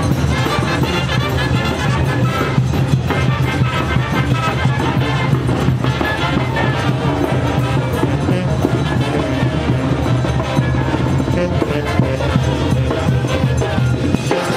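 Brass band music with percussion, playing continuously and loudly.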